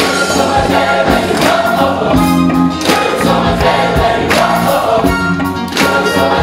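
Large gospel choir of adult and children's voices singing with a live band, percussion marking the beat.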